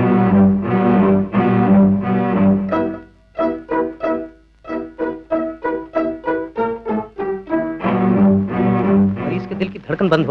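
Tense orchestral film score on bowed strings: short repeated notes at about four a second, with stretches of longer held chords near the start and again near the end.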